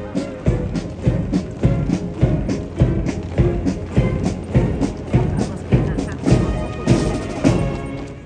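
Military band playing a march, with a steady drum beat about two a second under the brass.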